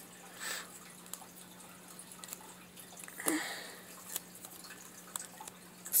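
Quiet room with a steady low electrical hum, two short soft breath sounds about half a second and three seconds in, and a few faint small clicks.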